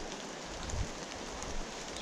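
Steady rushing of water from nearby waterfalls, with a soft low thump a little under a second in.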